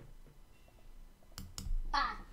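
A computer mouse button clicked near the end: two sharp clicks about a fifth of a second apart, pressed and released, in an otherwise quiet room.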